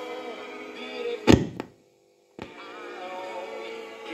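Vocal music playing from a JVC RC-550 stereo radio-cassette boombox, broken about a second in by a single loud thunk. The sound then cuts out completely for about half a second, and a click comes just before the music returns.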